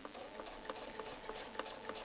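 Domestic sewing machine stitching slowly during free-motion ruler work: a faint steady motor hum with a light tick about three times a second as the needle strokes.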